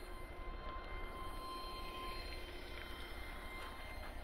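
Outdoor ambience dominated by a low, uneven rumble of wind on the microphone, with a faint steady high-pitched whine underneath and a few faint ticks.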